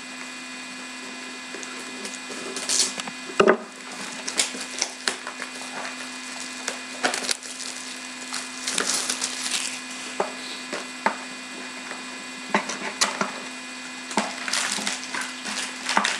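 Plastic wrap on a box of trading-card packs being cut, torn and crinkled, with irregular crackles, rustles and sharp clicks as the box and packs are handled. A steady low hum runs underneath.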